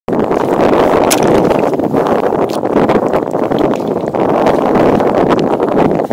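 Loud, steady wind noise across the microphone, with a few sharp knocks as a short-handled hoe chops into wet mud.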